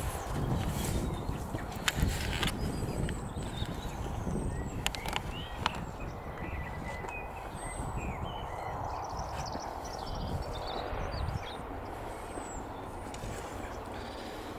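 Outdoor ambience: wind buffeting the microphone as an uneven low rumble, with a few light clicks in the first half and faint high chirps.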